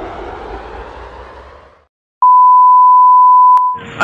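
An edited-in electronic beep: one loud, steady, single-pitched tone about a second and a half long, starting about two seconds in. Before it, a hiss fades away to silence.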